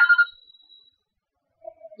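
A brief electronic tone at a steady pitch, with a fainter higher tone dying away by about a second in, then near silence; a voice starts near the end.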